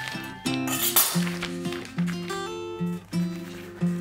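Background music: a melody of held notes that change every half second or so.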